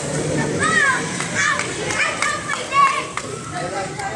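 Children's high voices calling out and squealing in short arching cries over a background murmur of people talking.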